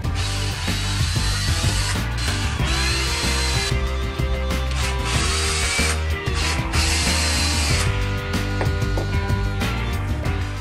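Cordless drill-driver running in several short bursts with a rising whine, backing screws out of an aluminium tube housing.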